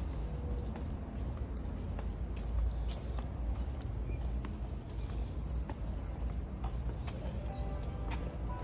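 Outdoor street ambience with a steady low rumble of wind on the microphone and scattered, irregular sharp clicks and taps.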